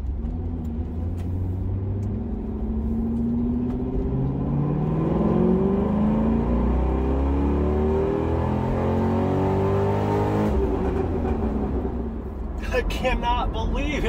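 C6 Corvette's LS2 6.0-litre V8 at wide-open throttle in second gear, heard from inside the cabin. Its pitch climbs steadily for about ten seconds, then drops off suddenly as the pull ends. The engine is breathing through one air filter only, with the passenger-side filter completely blocked off.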